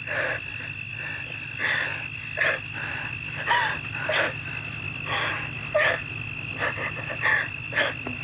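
A woman's short, breathy vocal gasps, coming about once or twice a second with an occasional brief rise in pitch, over a steady, rapidly pulsing high trill of night insects.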